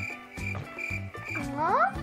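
Background music with a steady, repeating beat; near the end a rising, swooping tone sweeps upward.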